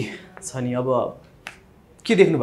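A man's voice speaks a short phrase, followed by a single sharp click about one and a half seconds in.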